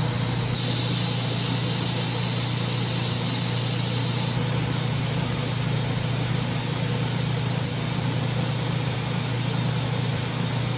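TIG welding on a steel roll-cage tube: a steady electric buzz with hiss from the arc. A faint high whine drops out about four seconds in.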